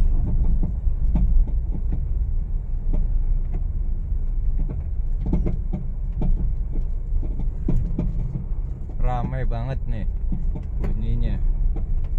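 Irregular clunking knocks ("gluduk-gluduk") from a Honda Mobilio's front suspension as it rolls over a rough, bumpy road, heard inside the cabin over a steady low road and engine rumble. The knocking comes from a badly worn front stabilizer link.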